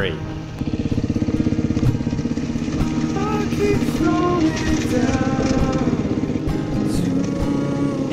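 Dirt bike engine running steadily as the bike rides along a rough trail, heard from the rider's on-board camera, with background music mixed over it.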